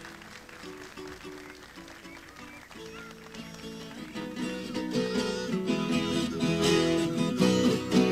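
Acoustic guitar and viola caipira playing the instrumental introduction of a country (caipira) song: soft picked notes at first, then fuller strumming that grows louder from about halfway.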